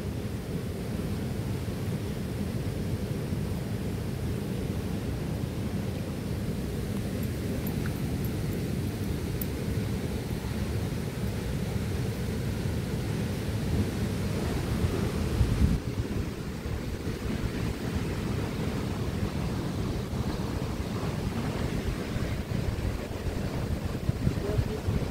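Steady low rushing of wind buffeting the microphone, with a brief low bump about two-thirds through.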